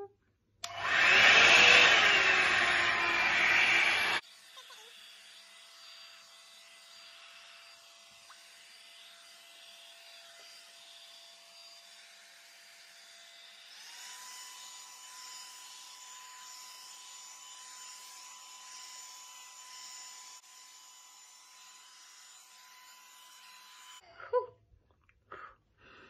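Revlon One-Step hair dryer brush switched on at its hot setting, blowing loudly with a motor whine. After about three seconds the sound drops abruptly to a faint steady hiss with a thin whine.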